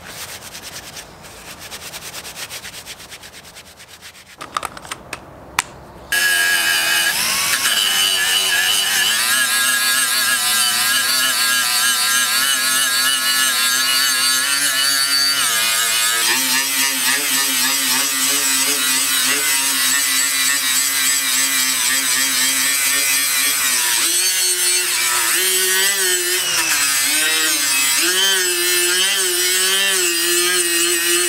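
Rubbing and handling noises with a few sharp clicks, then about six seconds in a small handheld power tool starts up and runs steadily to the end. Its whine wavers and shifts in pitch as the spinning wheel is pressed against the brass pump tube to polish it.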